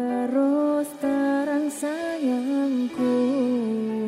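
Javanese-language pop song played by a live band: a single lead melody moves in short phrases of gliding, wavering notes over steady held keyboard tones, with no drumbeat.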